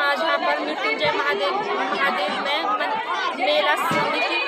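Chatter: several voices talking over one another, with no pause.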